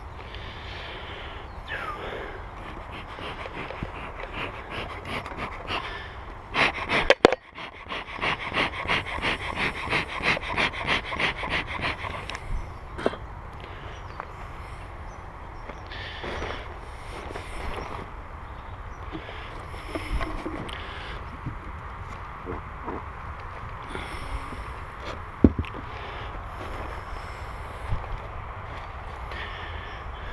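Bee smoker bellows puffed in a quick run of about two puffs a second for several seconds, over the steady buzzing of bees at an open hive. A few sharp knocks of a hive tool on the wooden boxes.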